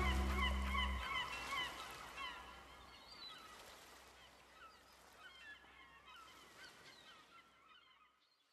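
The band's final chord dies away within the first second, leaving a flock of seagulls calling: many short, overlapping cries that fade out toward the end.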